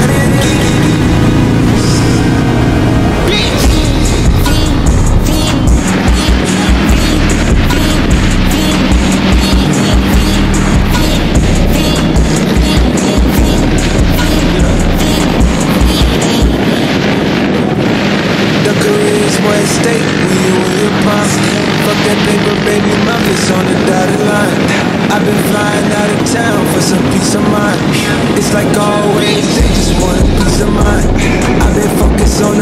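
Background music with a steady beat and a voice over it. The bass drops away about halfway through.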